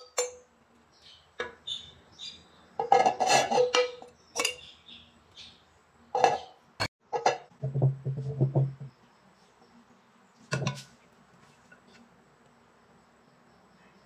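Small metal sieve tapped and shaken over a metal bundt pan to dust it with flour, giving short bursts of metallic rattling and clinking. Scattered knocks and a few low thuds come from the pan being handled and set down, and it goes quiet for the last few seconds.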